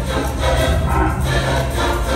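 Large mixed choir singing a rock song live in full voice, with a steady beat and strong bass underneath.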